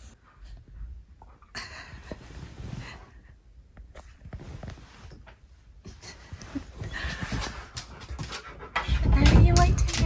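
Husky-malamute dog panting in uneven bursts, with a louder burst of noise near the end.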